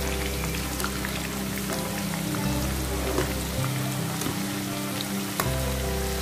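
Vegetable pieces deep-frying in a wok of hot oil, a steady crackling sizzle. Background music with held chords plays over it.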